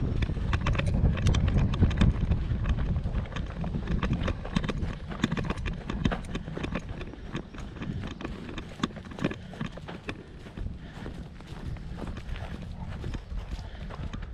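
Footsteps of a person walking across grass and dry ground, a steady run of short crunchy steps. A low rumble lies under them, strongest in the first few seconds, then easing.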